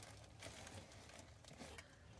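Near silence: faint room tone with light rustling from the tree's base being handled.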